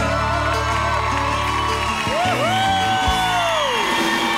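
Live band music with singing comes to an end: the held backing chord and bass cut off about two seconds in. Voices then give long whoops that slide up and down in pitch and fade out.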